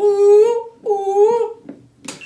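A person's high-pitched, drawn-out vocal cry, given twice in a row, each about three-quarters of a second long with the pitch bending up at the end.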